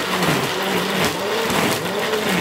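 Countertop blender motor running at full speed, churning tangerines, ice and water into juice; its pitch wavers up and down as the load in the jar shifts.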